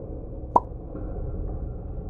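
A single water-drop plop about half a second in, with a brief ringing note, over a steady low rumbling cave-ambience bed.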